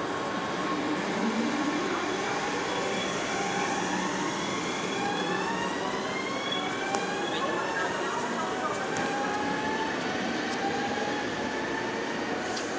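NS VIRM double-deck electric train pulling away, its traction motors giving a whine of several tones that rise steadily in pitch as it accelerates.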